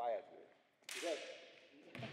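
A futsal ball is kicked hard about a second in, a sharp crack that rings on in the echoing hall. Short shouts from players come just before and after it, and a lighter kick follows near the end.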